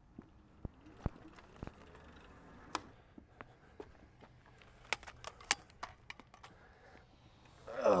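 Scattered sharp clicks and knocks from a phone camera on a tripod being handled and picked up. The tripod has just broken.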